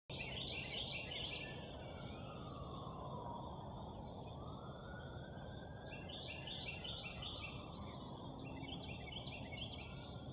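Backyard outdoor ambience: a steady low background rumble, with a bird calling in short series of quick repeated high notes near the start and again in the second half. A faint tone slowly falls and then rises again in the middle, like a distant siren.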